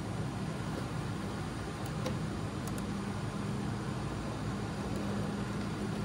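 A steady low machine hum, getting a little stronger about two seconds in, with a few faint light clicks.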